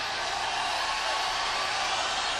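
Arena concert crowd cheering, a steady roar of voices with no guitar notes sounding.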